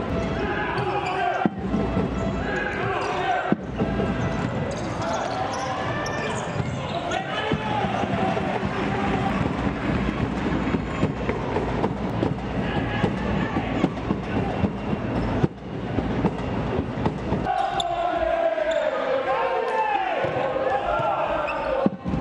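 Live sound of an indoor futsal game: players' and spectators' shouts echoing in a sports hall, with knocks of the ball being kicked and bouncing on the court. The sound cuts out suddenly for an instant three times, and the voices grow busier near the end.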